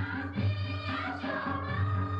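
A group of women singing a Ladakhi folk song together, their voices carried over a low, evenly repeating beat.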